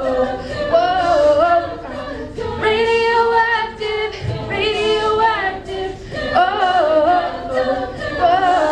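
An a cappella vocal group singing with no instruments, several voices in harmony, with held chords about three and five seconds in.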